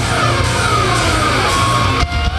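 A loud rock band playing live through a festival PA, heard from within the crowd: a dense wall of guitars and drums with a high pitched line sliding steadily downward. The full sound thins out abruptly at the very end.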